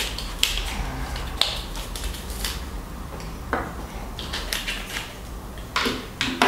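Brass rifle cartridges and their plastic ammunition box handled on a wooden table: a string of light clicks and taps as cartridges are pulled from the box and stood upright, with a duller knock about three and a half seconds in.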